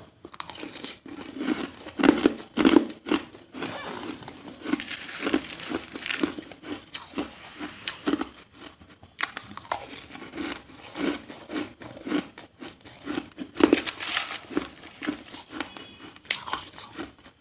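Soft shaved ice being bitten and chewed close to the microphone: a rapid run of crisp crunches and squeaky crumpling. It is loudest about two seconds in and again near the end, with a short lull a little past halfway.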